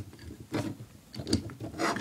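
Plastic LEGO Hero Factory figure being handled and repositioned by hand. A click at the start, then a few short scrapes and rubs of its plastic parts and joints.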